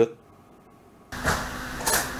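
About a second of near silence, then a steady mechanical hum with hiss starts suddenly: the workshop's background noise.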